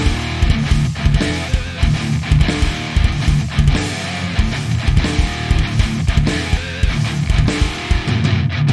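Instrumental rock passage: strummed, distorted electric guitar over a steady drum beat, with no vocals.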